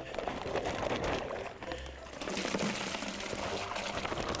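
Maple sap being poured from a plastic sap-collection bag into a plastic bucket: a steady stream of liquid splashing into the pail.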